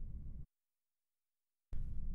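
Low steady room-tone hum and microphone noise, dropping out to dead digital silence a little under half a second in and coming back about a second later.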